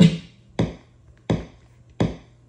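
Akai MPC 60 sampler sounding single short percussive drum-sample hits, one about every two-thirds of a second, each dying away quickly.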